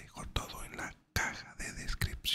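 A man whispering in Spanish close to a microphone, in short phrases with a brief pause midway.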